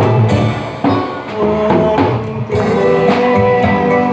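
Live band music with a drum kit keeping the beat, played over a loudspeaker system.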